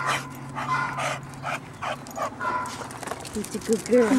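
A dog barking repeatedly in rapid short barks, about three a second.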